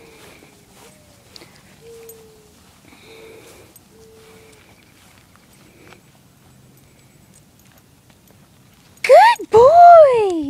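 A beagle-type dog yelps loudly twice about nine seconds in, each cry rising and then falling in pitch. Before that there are only faint soft sounds.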